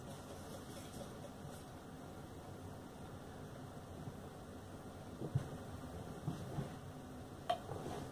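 Beer poured slowly from a glass bottle into a tilted glass, a faint steady pour and fizz, with a couple of soft clicks near the end.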